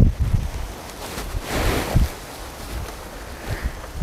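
Coir dust pouring out of an upended plastic sack onto a heap of rice husks, a soft rushing hiss loudest from about one to two seconds in, over low rumbles of wind on the microphone.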